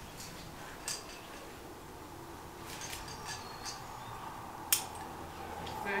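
Light metallic clinks of climbing hardware, carabiners and quickdraws knocking together, as a few scattered taps with one sharper click about three-quarters of the way through.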